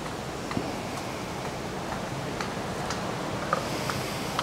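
Hot steel branding iron held pressed into a scrap of wood for a test burn: a steady faint hiss with a few small sharp crackling ticks as the wood scorches.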